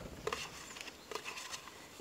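Hands stirring damp shredded-paper bedding in a plastic coffee container: faint wet rustling with a few small clicks of fingers against the container.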